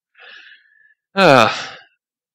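A man takes a short breath in, then lets out a voiced sigh that falls in pitch, about a second in.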